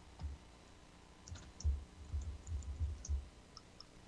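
Faint computer keyboard and mouse clicks as a text label is typed: a scatter of light clicks with soft low thumps in the middle.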